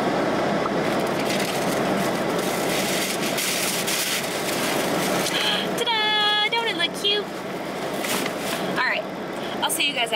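Crinkling and rustling of tissue paper and a paper gift bag being handled, over the steady blowing of a car's air conditioning on full.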